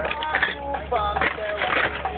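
Glass beer bottles clinking and rattling against each other as they are pulled from a cardboard carton and packed into a cooler, with voices talking over it.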